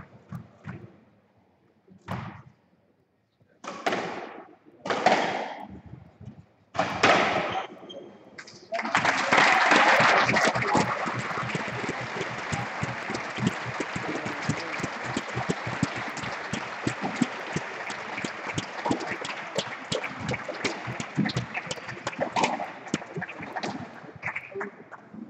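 A few short, loud knocks in the first eight seconds, then from about nine seconds in a crowd applauding steadily at the end of a squash match.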